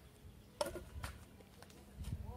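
Two short, sharp knocks, a little over half a second in and about a second in, from things being handled on a table.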